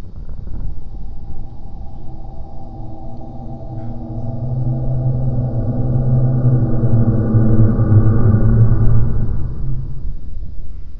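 Cinematic rumble with a deep droning tone that swells steadily louder, the soundtrack of an exploding-planet animation.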